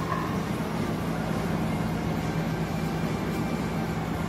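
A steady low hum over an even rush of background noise, with no change in level or pitch.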